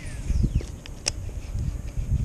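Fishing rod and reel being handled from a kayak: low handling rumble with two sharp clicks, about half a second and a second in, and a faint falling whine at the very start.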